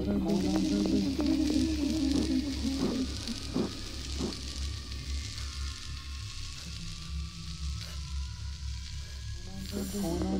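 Horror film soundtrack: a low pulsing drone under a steady hissing noise, with a wavering tone in the first few seconds, a few sharp knocks about three to four seconds in, and a thin high tone slowly falling through the second half.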